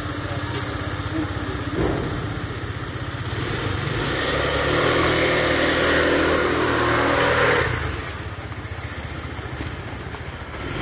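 A motor vehicle engine running nearby. It grows louder from about four seconds in and falls away just before eight seconds.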